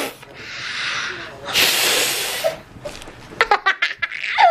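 Birthday candles being blown out: two long puffs of breath, the second louder and longer, about a second apart. A few sharp clicks follow near the end.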